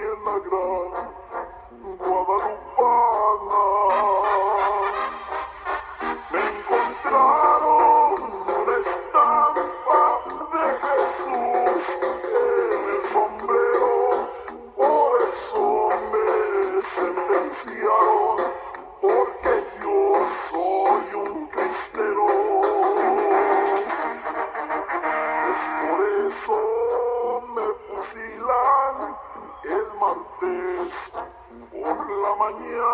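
A song with singing played back from cassette on a Philips D6620 portable mono cassette recorder, thin with no bass. The pitch wavers, which the owner puts down to bad drive belts.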